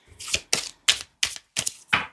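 Tarot cards being handled: a run of about six sharp card snaps and clicks, roughly one every third of a second.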